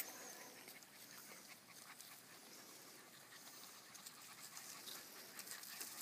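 Near silence: faint outdoor background hiss with a few soft ticks, a little louder near the end.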